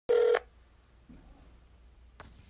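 A single short electronic beep right at the start, about a third of a second long, with a steady pitch, followed by faint low background hum.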